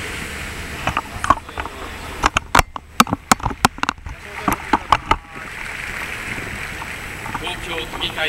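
A quick run of sharp knocks, about four a second, loudest between about two and five seconds in, over a steady background hiss.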